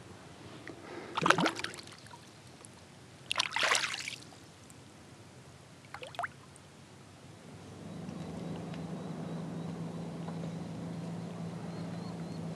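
Splashes of a largemouth bass being released into the water beside a kayak, about a second in and again around three and a half seconds in, with a short smaller splash near six seconds. From about eight seconds in a steady low hum sets in.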